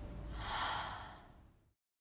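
One sharp, breathy gasp about half a second in, over a low steady rumble of room tone; everything cuts off suddenly to dead silence shortly before the end.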